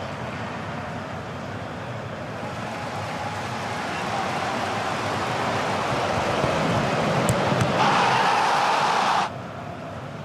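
Artificial stadium crowd noise: a steady hubbub that swells over the second half into a loud roar as the attack reaches the goalmouth, then cuts off suddenly near the end.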